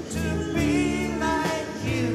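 Live rock band music with singing: a slow song, the sung notes wavering over held low chords.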